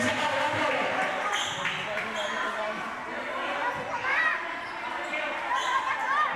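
A basketball bouncing on the court floor a few times, amid the voices and shouts of spectators echoing under a covered court's roof.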